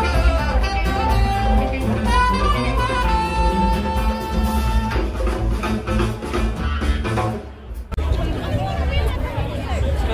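Live jazz band playing, with saxophone holding long notes over a drum kit and hand drums. About three-quarters of the way through the music drops out suddenly and gives way to crowd chatter.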